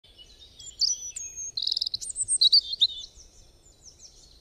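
Birdsong: quick high chirps and whistled notes, with a fast trill a little before halfway, fading after about three seconds.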